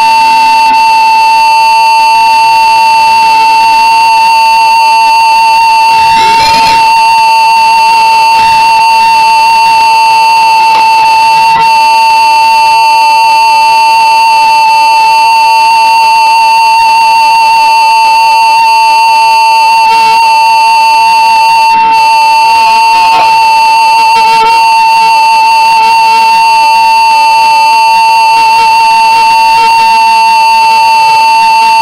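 A loud, steady high tone held without a break and without wavering. Fainter wavering melodic lines from the flute and band weave around it.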